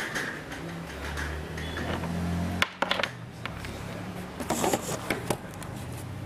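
Handling noise at a desk: scattered short clicks and knocks as a hand-held camera is moved and a USB cable is unplugged. A low hum builds from about a second in and cuts off suddenly before the middle.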